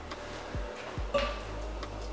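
Aluminium scooter deck, a North Transit V1, being picked up and handled, giving a few light knocks and clicks, about half a second and a second in, over a low steady hum.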